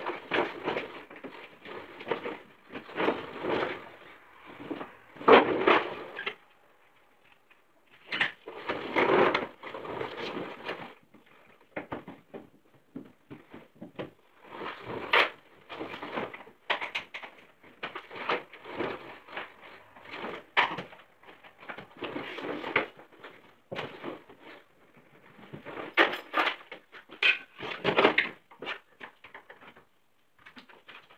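Irregular handling noises: rustling, knocks and clatters of parts and tools being moved, with sharp clicks here and there and a short lull about six to eight seconds in.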